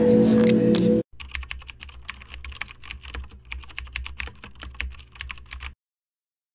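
Computer-keyboard typing sound effect: rapid, irregular key clicks that start suddenly about a second in, after a second of steady droning tones, and cut off just before the end.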